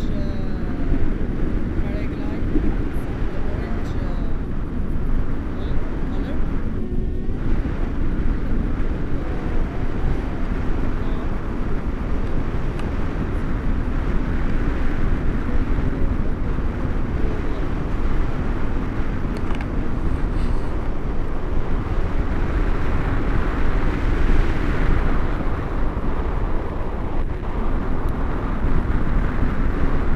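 Wind rushing over an action camera's microphone during paraglider flight: a steady, loud rumbling noise.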